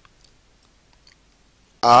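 Quiet room tone with a few faint, short clicks, then a man says "a" near the end.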